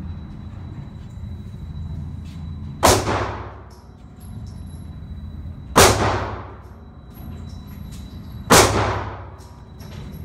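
Three gunshots roughly three seconds apart, each followed by a long echo off the concrete walls of an indoor shooting range, over a steady low hum.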